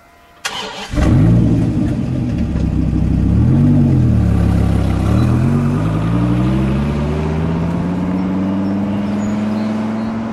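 Dodge Viper GTS V10 engine starting: a brief crank about half a second in, catching about a second in and idling, a quick rev around four seconds in. From about five seconds in the car pulls away, its engine note climbing steadily as it accelerates.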